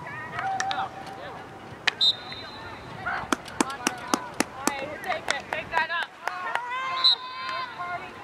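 Field hockey sticks clacking against the ball and each other in a quick run of sharp cracks in the middle, with a few more later, amid shouting from players and spectators.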